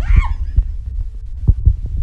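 Handling noise of a phone camera being swung around while filming: a low rumble with several heavy thumps, the two loudest about a second and a half in. There is a brief high-pitched cry from a person at the very start.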